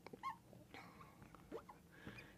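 Faint squeaks of a marker writing on a glass lightboard: a few short, thin, high squeaks over near silence.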